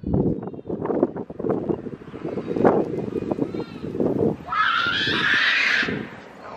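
A car going fast past on the street, its rumble mixed with wind and handling noise on a moving phone's microphone; a higher rushing sound with a faint rising whine comes in near the end.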